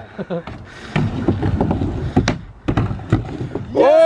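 Skateboard wheels rolling on a ramp, a low steady rumble, with two sharp clacks of the board or trucks, about two and three seconds in.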